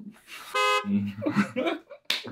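A short, steady horn-like toot about half a second in, followed by a person's voice.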